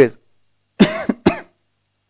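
A man coughing twice in quick succession, short and harsh, about a second in.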